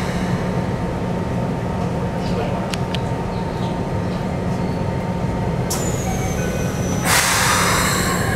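Inside a stopped Keikyu New 1000 series commuter train: a steady low hum from the car, then the passenger doors closing about seven seconds in, a loud rush of noise lasting about a second.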